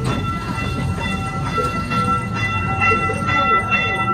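Small boardwalk tourist train running, a steady low rumble of its drive and wheels heard from an open passenger car.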